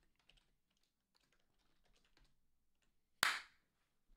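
Faint typing on a computer keyboard, with keys clicking irregularly, then one short, louder sharp sound about three seconds in.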